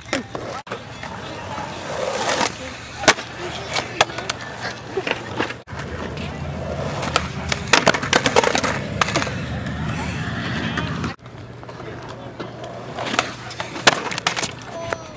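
Skateboard wheels rolling on concrete with a steady rumble, strongest through the middle, broken by sharp clacks of the board and trucks hitting the concrete.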